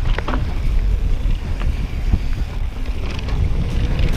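Wind buffeting a chest-mounted camera microphone as a mountain bike descends a dirt singletrack at speed: a steady low rumble, broken by a few sharp clicks and knocks from the bike over the trail.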